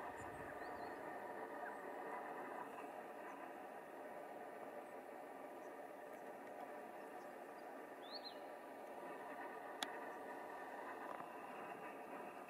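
Faint, thin, high-pitched calls of a Mallee emu-wren, a few short squeaky notes spread out, the clearest about eight seconds in, over a steady faint hiss. A single sharp click just before ten seconds.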